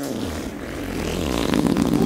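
A dishwasher running: a low rumble with a rushing noise that comes on suddenly and swells a little.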